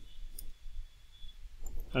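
A few faint clicks from a computer keyboard and mouse as a name is typed and a dropdown list is clicked open.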